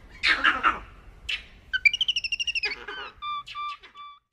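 Birds chirping: a rapid high trill about two seconds in, followed by short whistled notes near the end.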